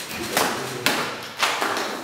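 Katana slicing through a rolled straw mat target: three sharp cuts in quick succession, about half a second apart.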